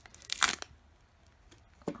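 Foil Pokémon card booster pack being torn open by hand, one short rip about half a second in.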